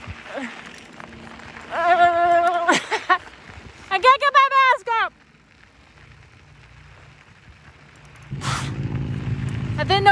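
A woman's voice holding one sung note about two seconds in, then a short run of wavering sung notes around four seconds. Near the end a low rushing noise rises.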